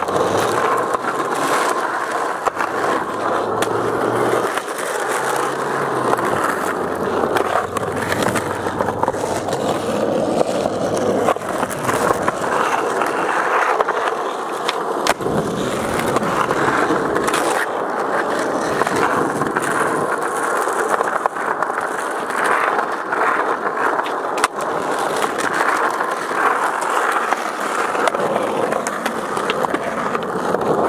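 Skateboard wheels rolling steadily on rough asphalt, with several sharp clacks of the board's tail popping and the board landing.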